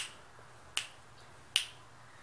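Finger snaps keeping a slow, steady beat for unaccompanied singing: three sharp snaps, evenly spaced a little under a second apart.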